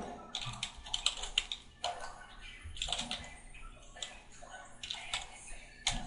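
Computer keyboard being typed on: a run of irregular, quick key clicks as a web address is entered.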